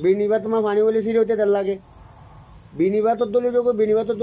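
Crickets chirping in a steady, unbroken high trill under a man's voice, which pauses for about a second in the middle.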